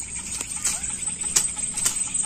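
A few sharp taps and rustles from a mesh keep net being handled, over a steady high insect buzz.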